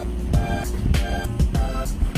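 Background music with a steady beat and deep bass.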